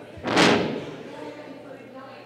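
A single loud slam about half a second in, ringing out in the large hall, over faint audience chatter.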